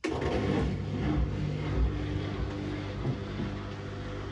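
Hoover Dynamic Next top-loading washing machine running: a steady motor hum with a few low tones over a broad whooshing noise.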